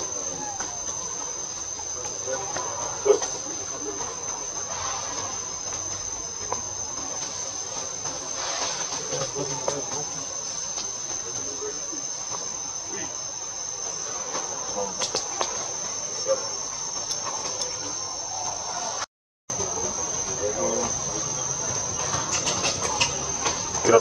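Insects buzzing in the trees, one steady high-pitched tone that holds throughout. The sound cuts out completely for about half a second near the three-quarter mark.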